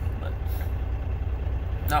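Idling vehicle engine heard from inside the cab: a steady low rumble that does not change.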